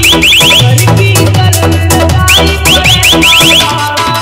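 Indian DJ remix, a fast competition mix with heavy bass and a quick beat, overlaid with a whistle ('sitti') effect: runs of about seven short rising whistles, one right at the start and another in the second half.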